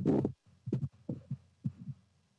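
A brief hesitation sound from a man's voice, then several faint, short low pulses over a steady low hum on the video-call audio line.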